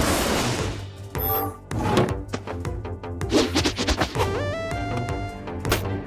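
A thunderclap at the start, fading away over about a second, over cartoon background music; near the end the music climbs in a rising run of notes and closes with a sharp hit.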